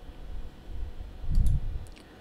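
Soft low thuds and a few light clicks, loudest about a second and a half in, from hands working a computer keyboard and mouse at a desk.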